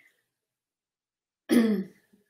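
A woman clears her throat once, briefly, about a second and a half in, after a silent pause.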